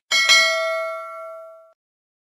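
Notification-bell sound effect: a bell ding struck twice in quick succession, then ringing out and fading over about a second and a half.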